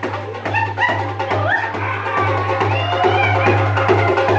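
Darbuka (goblet drum) played live in a fast run of hand strokes. It sounds over a steady low drone, with a sliding high melodic line on top.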